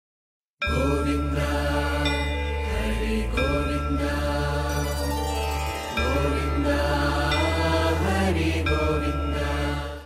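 Devotional music with a chanted mantra over a steady deep drone. It starts about half a second in and cuts off abruptly at the end.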